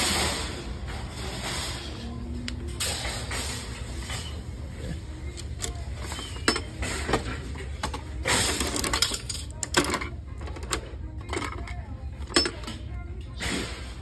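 Coin-operated capsule toy vending machine being worked: its metal mechanism gives ratcheting clicks and knocks. There is a scattered run of sharp clicks through the second half, the loudest about halfway through and near the end.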